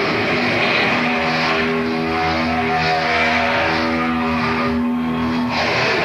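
Heavy metal band playing live, with held electric guitar notes ringing over a dense wash of drums and bass, on a raw bootleg tape recording.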